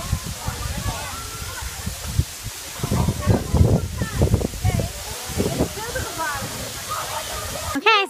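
Tall waterfall pouring down a rock face: a steady rushing hiss, with wind buffeting the microphone in gusts, heaviest in the middle. Faint voices sound in the background.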